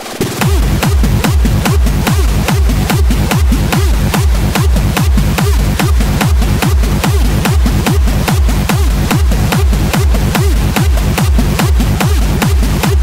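Fast electronic dance track with a heavy kick drum on every beat, about two and a half beats a second, each kick falling in pitch. The kick comes back in right at the start after a short break.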